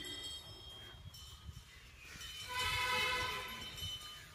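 A horn sounds once, a sustained steady tone of several pitches lasting about a second and a half in the second half, over a low rumble.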